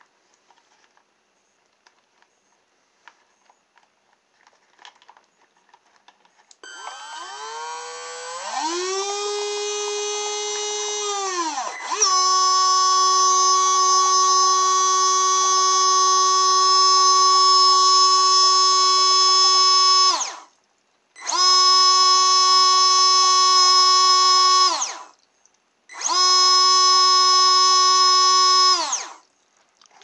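Small 3–6 V DC water pump's brushed motor starting up with a whine that rises in pitch, steadies, then jumps louder and runs steady. It is then cut off and restarted twice. The pump is drawing water through a scouring-pad filter over its inlet and keeps its full jet strength.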